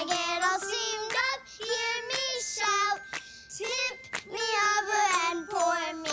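A young girl singing a tune into a toy karaoke microphone, in short phrases of held notes with a brief pause about halfway through.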